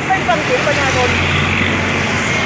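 Road traffic: a motor vehicle passing close by, an even rush of engine and tyre noise with a low hum that swells in the second half.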